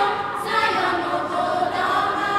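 Mixed school choir of teenage boys and girls singing an Igbo song together, voices held in sustained, overlapping parts.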